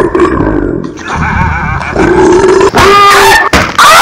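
Loud roaring and growling voice for a cartoon monster, wavering in pitch, rising to higher-pitched cries twice in the last second or so.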